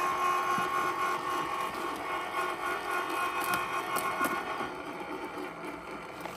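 Ryobi 36V HP brushless crushing shredder running with a steady motor whine while a leafy branch is drawn into its blade, with a few light cracks of wood being crushed.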